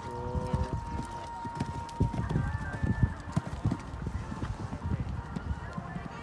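A horse's hooves cantering on a sand arena surface: a run of dull thuds, loudest about two to three seconds in.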